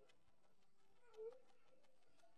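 Near silence, broken about a second in by one faint, short pitched sound.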